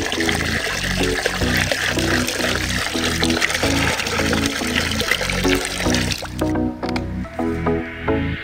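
Soda poured from two bottles into a barrel of cola, a steady splashing, fizzing hiss that stops suddenly about six seconds in. Background music with a steady beat runs under it.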